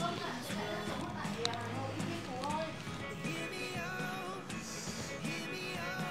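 Background music: a song with a voice carrying the melody over a steady accompaniment.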